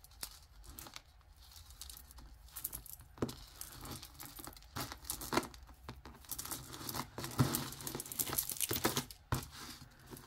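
Tangled necklaces of cord, metal chain and glass beads being worked apart by hand close to the microphone: irregular small clicks, clinks and rustles, busiest and loudest in the second half.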